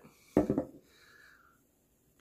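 A man's brief vocal sound, a short voiced noise lasting about a third of a second, starting about a third of a second in. A faint breathy sound follows.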